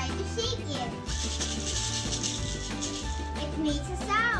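Homemade maraca, a plastic toy egg filled with beads, shaken for about a second and a half, giving a hissing rattle over background music.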